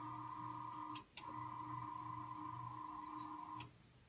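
Electric hospital bed motor running as the bed is lowered to its lowest position: a steady motor whine that cuts out briefly about a second in, runs again, then stops shortly before the end.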